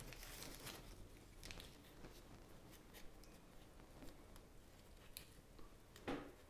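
Near silence with faint rustles and a few small clicks: hands binding a small bromeliad to a dried branch with thin reel wire.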